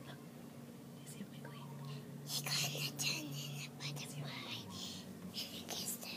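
Hushed whispering voices, with hissy whispered syllables coming thickly in the second half.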